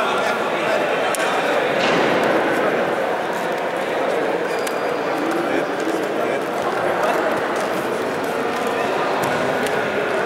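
Indistinct chatter of many overlapping voices echoing around a gymnasium, with a few faint knocks.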